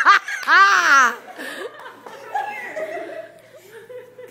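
People laughing, loudest in the first second, then dying down to quieter laughter and murmuring.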